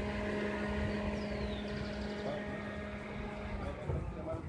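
Steady hum of an idling car engine, which stops shortly before the end.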